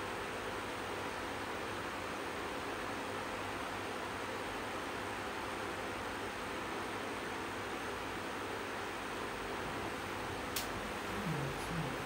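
Electric fan running with a steady hiss. A single sharp click comes about ten and a half seconds in, and a brief low sound follows just before the end.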